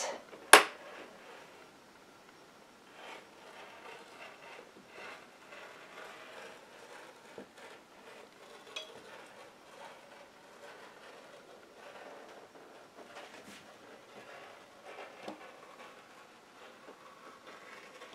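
Rotary cutter blade rolling slowly along a curve through fabric on a cutting mat: faint, uneven scraping strokes, with one sharp click about half a second in. The blade is worn and the mat deeply grooved, which the quilter says keeps it from cutting well.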